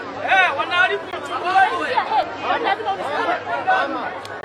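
Voices talking over one another: the speech of a street scuffle, with no other sound standing out.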